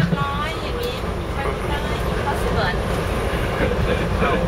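Steady low rumble of a coach bus at motorway speed, heard from inside the passenger cabin, with voices over it at the start.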